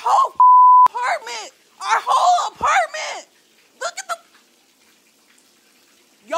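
A censor bleep: a steady single tone lasting about half a second, loud against a high voice talking in short broken bursts over the first few seconds. It masks a spoken word, typical of a bleeped swear word.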